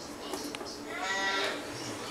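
A young child's voice making a short, drawn-out wordless sound about a second in, with a faint tap just before it.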